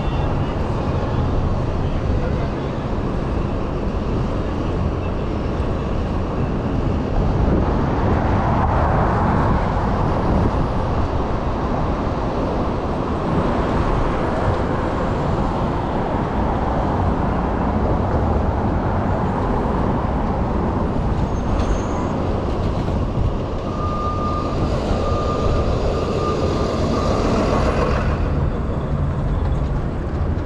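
Steady wind and road rumble on the microphone of a moving electric scooter, with city street traffic around it. A short high beeping tone repeats three or four times near the end.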